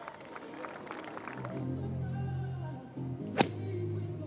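Golf club striking the ball on a tee shot: one sharp crack about three and a half seconds in, over background music.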